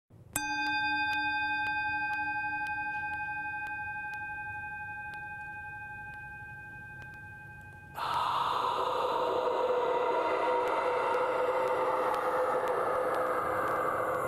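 Struck metal percussion music. A bell-like tone with several clear ringing overtones is struck once and fades slowly over about seven seconds. About eight seconds in, a louder, rushing metallic wash like a gong swells in and holds.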